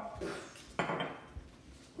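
An empty glass olive oil bottle set down on a granite countertop: one clunk with a short ring a little under a second in, then a faint tick.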